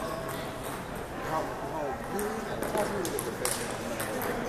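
Scattered sharp clicks of table tennis balls striking tables and paddles, with a cluster of them near the end, over steady chatter of voices.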